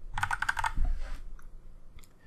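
Typing on a computer keyboard: a quick run of keystrokes that stops a little over a second in.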